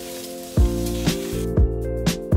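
Fresh shrimp heads sizzling as they are dry-roasted and stirred in a hot stainless wok without oil, the hiss coming from the water in the heads; the sizzle drops away about one and a half seconds in. Background music with held notes and a steady drum beat about twice a second plays throughout.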